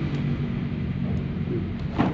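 A steady low engine hum, running evenly at an idle with no change in pitch.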